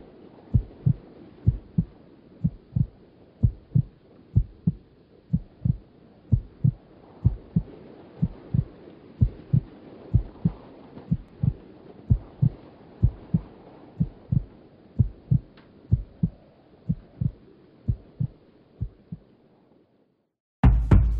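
A slow, heartbeat-like pulse of low thumps, about two a second, over a faint steady hiss. The thumps stop just before the end.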